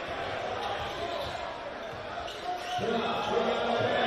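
Crowd noise in a packed gym with a basketball being dribbled on the hardwood court. About three seconds in, one voice rises over the crowd in a drawn-out call.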